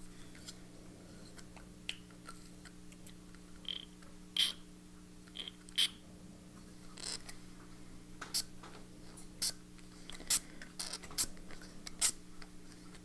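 Scattered light clicks and scratchy taps of hands splattering fountain-pen ink onto a notebook page, over a faint steady low hum.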